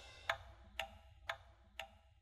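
Clock-ticking sound effect: sharp, even ticks, two a second, fading over the dying tail of the outro music.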